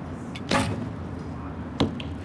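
Recurve bow shot: the string is released with a short sharp snap about half a second in, then about 1.3 s later the arrow strikes the target with a sharp crack.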